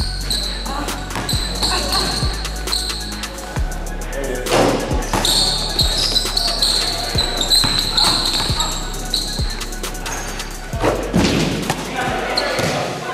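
Basketball dribbled hard on a gym floor in irregular bounces, with music and voices in the background.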